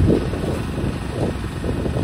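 Demolition excavator working: its diesel engine running under a low, uneven rumble from the machine at the concrete, with wind buffeting the microphone.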